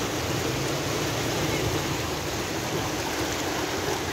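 Steady rush of churning, muddy water as the Bono tidal bore surges past.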